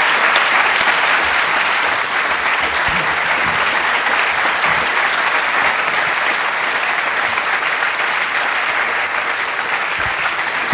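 A large audience applauding steadily, a dense even clapping that eases off a little toward the end.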